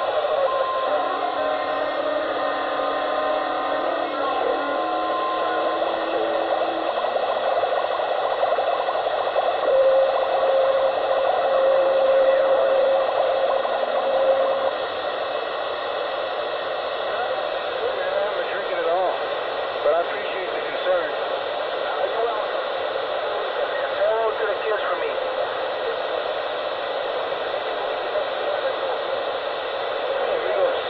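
Hissy, muffled radio-like sound with voices too indistinct to make out. A few short steady tones sound in the first several seconds, and one tone is held for about five seconds starting around ten seconds in.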